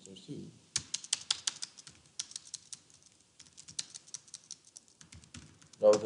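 Typing on a computer keyboard: fast runs of key clicks, densest in the first couple of seconds, then thinning out to scattered presses.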